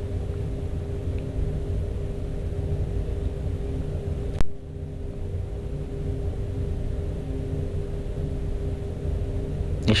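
Steady low machinery hum and rumble with a couple of constant tones running under it. A single sharp click about four and a half seconds in, after which the level briefly dips.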